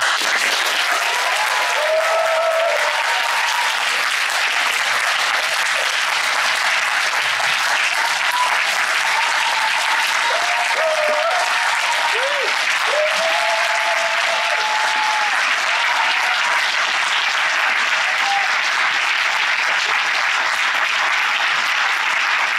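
Conference audience applauding: loud, steady clapping that runs unbroken, with a few voices calling out over it in the first part.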